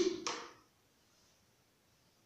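The last of a woman's spoken words trailing off in the first half-second, then near silence: room tone.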